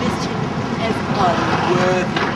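Indistinct voices, some talk about a second in, over a steady low background rumble of outdoor noise.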